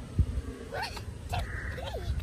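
A small child's short, high-pitched vocal squeaks, several in quick succession starting a little under a second in, each rising and falling in pitch, as she runs and jumps. A low thump just after the start.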